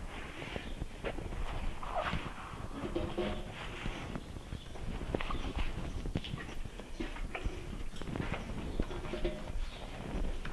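Hands working wet shampoo and conditioner lather through a horse's tail, a scattered rubbing and squelching, with irregular footsteps and knocks on the wet concrete floor as the handler walks around the horse.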